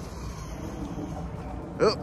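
Losi Super Rock Rey 2.0 RC truck running at full throttle some way off across grass, heard only as a faint steady noise under the outdoor background. A man exclaims "oop" near the end.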